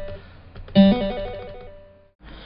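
Sampled acoustic guitar sound from the MIDI Fretboard iOS app: the previous note fading out, then a single new note plucked about three-quarters of a second in, ringing and dying away.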